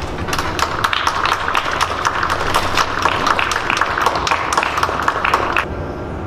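Audience applause: a scatter of hand claps that stops about half a second before the end.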